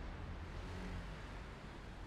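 Steady low rumble of a car's engine and tyres on the road, heard from inside the cabin while driving at moderate speed.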